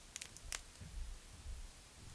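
A few faint, sharp clicks, two close together near the start and a stronger one about half a second in, from a thin, brittle tapioca-starch biopolymer sheet being handled between the fingers.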